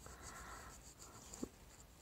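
Near silence: faint room tone, with one brief soft click about one and a half seconds in.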